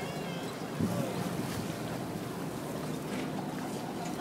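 Wind on the microphone over the wash of choppy sea water around a boat, a steady rushing noise with a brief low bump about a second in.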